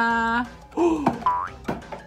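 Cartoon-style 'boing' sound effects: a held sliding tone that stops about half a second in, then a falling slide and a quick rising one.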